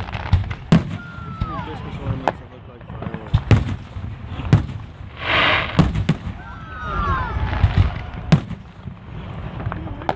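Aerial fireworks shells bursting overhead: about ten sharp bangs at uneven intervals, with a hissing rush lasting about a second in the middle.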